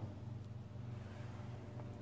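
Quiet pause: a faint, steady low hum with light background hiss, and no distinct events.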